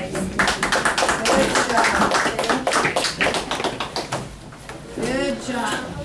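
A small group of people clapping, dense and uneven, for about four seconds before dying away, with a voice near the end.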